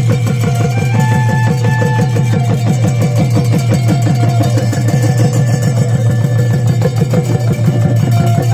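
Bamboo transverse flute playing a melody of held notes through a microphone and PA, over a fast steady beat from a barrel drum and small hand cymbals: traditional Mising music for the Gumrag dance.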